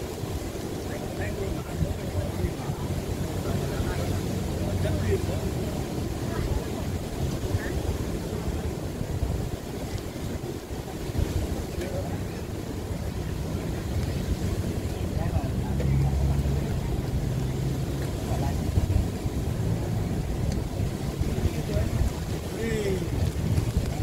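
Surf washing onto a sandy beach, mixed with a heavy, uneven low rumble of wind on the microphone. Faint voices can be heard in the distance.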